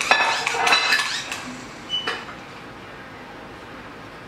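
Metal fork and knife clinking and scraping against a roasting pan as a ham is carved: a quick run of clinks in the first second or so, then one short ringing clink about two seconds in.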